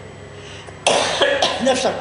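An elderly man coughs once, sharply, a little under a second in, then carries straight on speaking.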